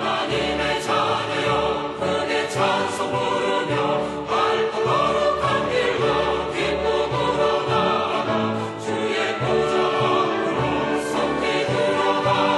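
Choral music: a choir singing sustained, slow-moving chords with orchestral accompaniment.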